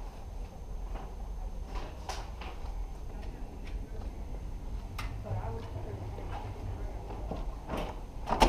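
Steady low hum of a building interior with faint muffled voices and a few light clicks, one just before the end.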